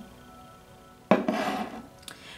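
A ceramic bowl with a candle in it set down and moved on a tabletop: a sudden scrape about a second in that rubs on briefly and fades, over faint background music.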